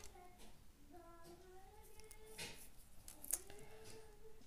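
A person's voice faintly singing a few drawn-out, gliding notes, with a couple of soft handling rustles.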